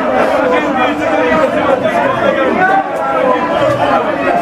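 A loud crowd of football supporters celebrating, many voices shouting over one another without a break.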